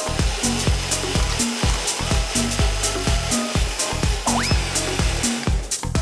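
A small personal blender's motor running, blending a liquid chilli-garlic dipping sauce, under background music with a steady beat.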